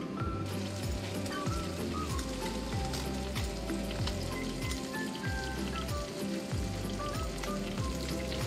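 Background music with a steady beat, over a continuous hiss of rain.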